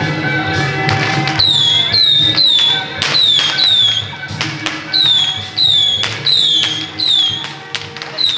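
Temple procession band music: held melody notes, then from about a second and a half in a steady run of sharp metallic strikes, each ringing with a high tone that slides down in pitch, about two a second.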